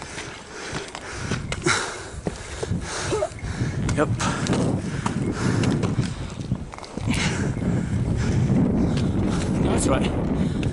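Wind buffeting the microphone in gusts, dropping off briefly near the seven-second mark, with scattered clicks and scuffs of footsteps and a trekking pole on granite rock.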